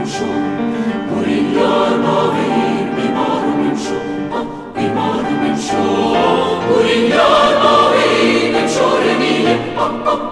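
A choir singing an arrangement of an Iranian folk song in held, layered chords, briefly dipping just before the halfway point and then swelling louder and fuller about seven seconds in.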